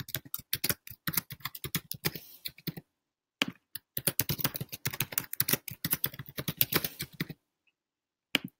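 Rapid typing on a computer keyboard in two runs of keystrokes, with a short pause about three seconds in; the keys stop a little before the end.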